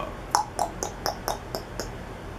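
A quick run of about seven short, sharp clicks, roughly four a second, in a pause in speech.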